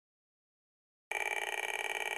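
Piezo buzzer driven by a homemade op-amp function generator, sounding a steady buzzy tone that starts suddenly about a second in.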